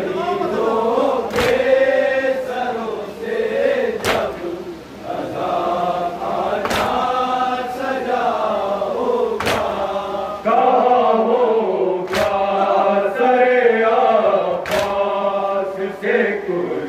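A group of men chanting a noha, a mourning lament, in unison, punctuated by a sharp collective slap of hands on chests (matam) about every two and a half seconds.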